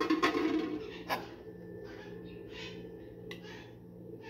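A few light clicks and clinks of an aluminium pot lid and metal serving tongs, with soft scraping as pasta is lifted onto a plate, over a steady low hum.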